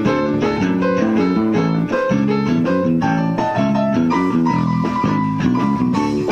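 A blues band playing live through an instrumental passage without vocals, with guitar and electric bass prominent.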